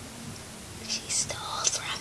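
A girl whispering a few words about a second in, after a quiet moment of room tone.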